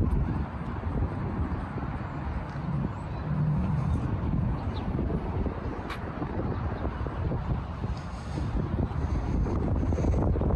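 Wind buffeting the microphone outdoors: a steady, uneven low rumble with no distinct tones, and one brief click about six seconds in.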